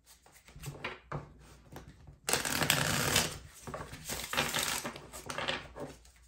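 A deck of tarot cards being handled and shuffled by hand. A few light taps and clicks come first, then a dense, loud burst of shuffling about two seconds in, followed by looser, irregular shuffling that fades near the end.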